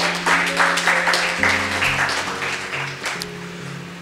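Audience applauding over soft background music with held low notes; the clapping dies away near the end.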